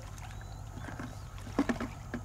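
Shallow pond water sloshing and splashing around a person wading and feeling for mussels, with a few louder splashes about a second and a half in, over a steady low background rumble.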